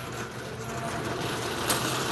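Wire shopping cart rolling across a concrete store floor: a steady rumble from the wheels with light rattling of the basket, and a sharper clatter near the end.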